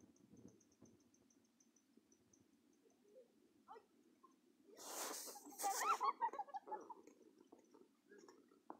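Quiet background, then a breathy snort about five seconds in, followed by a short burst of stifled laughter.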